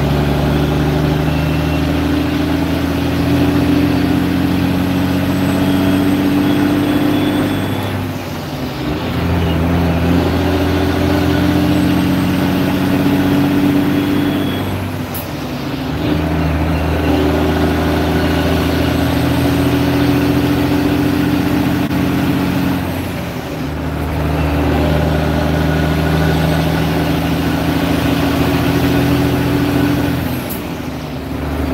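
Semi-truck diesel engine heard from inside the cab, pulling under load, with the engine note dropping out briefly about every seven seconds as the driver shifts gears on the manual transmission.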